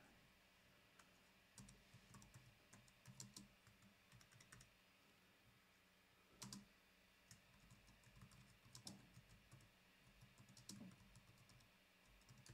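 Faint typing on a computer keyboard: scattered soft keystrokes, with one louder click about six and a half seconds in.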